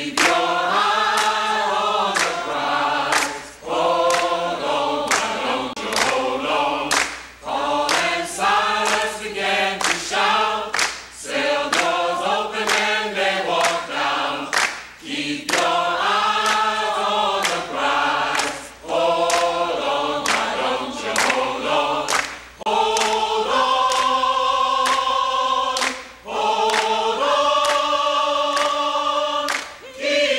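A choir singing a slow song in short rising-and-falling phrases with brief pauses between them, holding long notes in the last several seconds.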